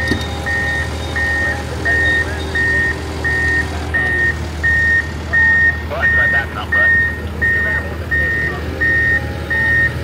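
Backup alarm beeping steadily, about two beeps a second, over the low steady drone of a running diesel engine.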